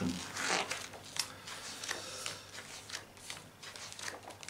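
Pages of a large hardcover book being turned by hand: paper rustling and sliding in a series of short, soft swishes.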